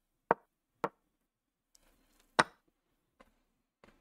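Online chess board's move sound effects, short wooden-sounding knocks as pieces are played in a fast time scramble. There are three sharp ones at about a third of a second, just under a second and about two and a half seconds in, and a fainter one a little after three seconds.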